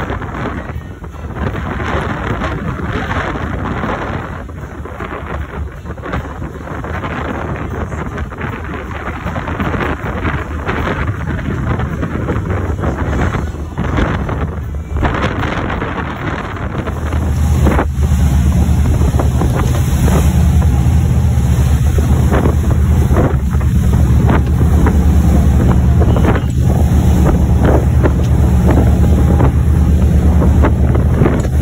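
Wind buffeting the microphone over the rush of a sportfishing boat's wake and engine while it trolls through rough sea. About seventeen seconds in, the sound turns louder, with a heavy low rumble.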